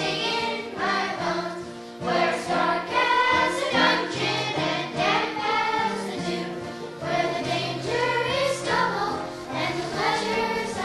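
A children's chorus singing a song together, over low held accompaniment notes.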